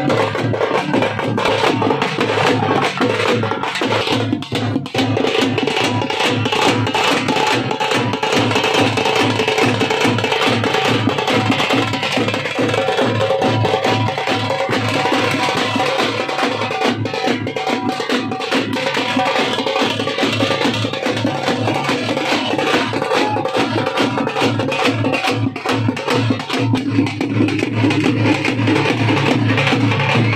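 Veeragase dance drums beaten with sticks in a fast, steady rhythm, with held tones sounding underneath.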